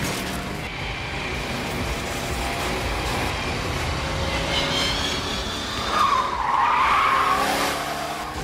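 Car chase sound effects: a car engine revving hard and tyres skidding, with a loud, wavering tyre squeal about six seconds in.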